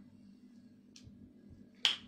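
Mostly quiet room tone with a faint, brief rustle about a second in, then one sharp click near the end.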